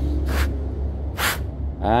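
Two short puffs of breath blown onto a blow-activated rechargeable lighter to make it light, the second one louder.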